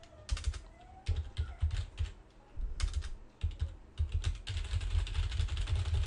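Computer keyboard typing in quick, irregular bursts of rapid keystrokes with short pauses between them, random keys struck to fill a text box with nonsense.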